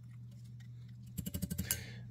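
White plastic spoon stirring rehydrating rice porridge in a ceramic bowl, then a quick rattle of clicks about a second and a half in as the spoon knocks against the bowl, over a steady low hum.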